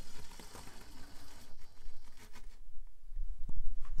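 Traxxas TRX-4M micro RC crawler clawing up a near-vertical rock face: the tyres scrabble and grit patters, with a few light ticks. A low rumble swells about three seconds in.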